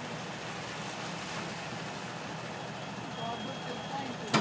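Steady outdoor background noise like road traffic, with faint voices near the end.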